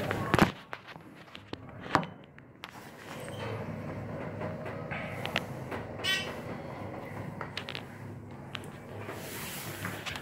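Dover hydraulic elevator cab in motion: a steady low hum settles in about three seconds in, with a faint tone and scattered light clicks and rattles.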